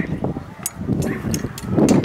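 Scattered sharp knocks and clanks of hand weapons striking shields and armour as two lines of fighters clash, over a rough background din of the fight.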